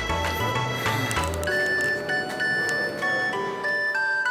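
Background music: a pulsing bass line that drops out about a second and a half in, leaving a bright, high melody of clean, held notes.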